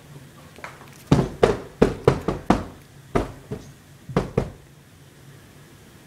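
A quick, irregular run of about ten sharp knocks or thumps over some three seconds.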